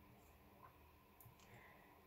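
Near silence, with a few faint clicks of a pen writing on paper.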